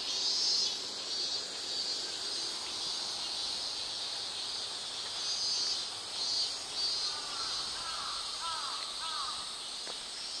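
Cicadas droning steadily in a high, pulsing chorus that swells and fades. From about seven seconds in, a bird gives a quick run of short arched calls.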